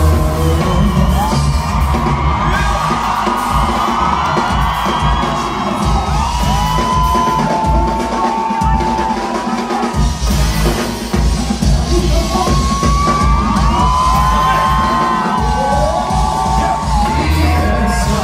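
A live pop-rock band plays an instrumental passage on electric guitars and drums, with gliding, bending lead lines over a steady low end. Crowd whoops and yells come through over the music.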